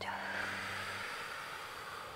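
A long breath out through the mouth, a soft hiss that slowly fades, over a low steady background music tone that stops about a second in.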